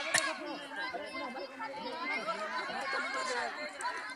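Several people talking at once in overlapping chatter, with a sharp click just after the start.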